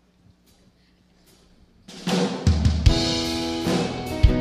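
Near silence, then about two seconds in a live band starts a song: drum kit with kick and snare hits under sustained bass and keyboard chords.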